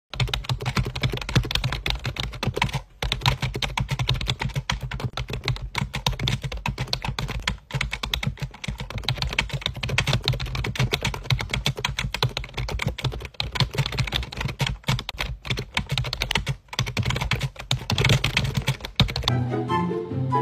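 Rapid, irregular clicking, dense and continuous, over a steady low background, with brief gaps about three and eight seconds in.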